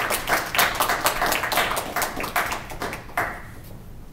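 Audience applauding, the claps dense at first and dying away about three seconds in.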